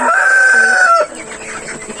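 A young chicken gives one long, steady, high-pitched call that stops about a second in, followed by quieter clucking and rustling.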